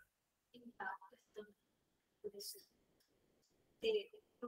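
Faint, distant speech: a woman asking a question away from the microphone, heard only weakly in short broken phrases.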